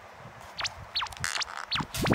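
Edited-in cartoon whistle sound effects: a quick rising whistle glide, then two falling glides from high to low, with a brief scuffle in between.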